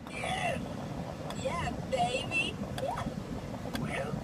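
Faint, scattered bits of a person's voice, short and quiet, over a steady low rumble inside a car.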